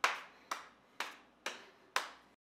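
A person clapping her hands in a steady, even rhythm, about two claps a second.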